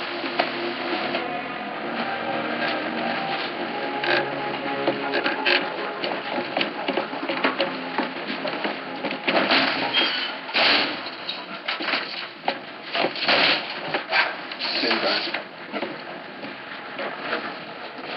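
Film soundtrack mix of music and voices, with a run of knocks and clatter that is loudest in the middle of the stretch.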